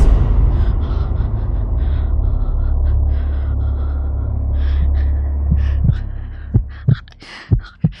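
Dramatic suspense sound effect: a loud, steady low rumbling drone with faint short hissy bursts above it, fading out about six seconds in and giving way to a few separate low thuds.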